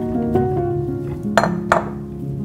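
A glass mixing bowl clinks twice in quick succession, about a second and a half in, as a ball of pizza dough is placed into it, over background music.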